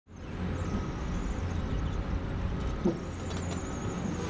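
Steady low diesel rumble of heavy construction machinery running, with a brief squeak about three seconds in.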